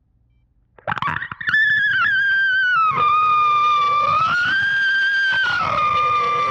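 Loud, distorted, high-pitched screech that cuts in suddenly about a second in after near silence. Its pitch slides down, swells back up and drops again as it holds.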